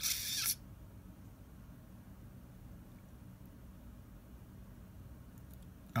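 A brief hiss lasting about half a second at the start, then a faint, steady low hum of room tone.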